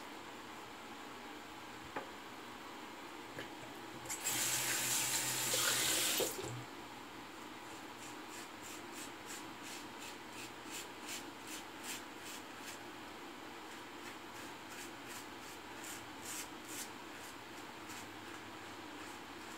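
Sink tap running for about two seconds, a few seconds in. Then a string of short, crisp scraping strokes against a lathered face, about one or two a second.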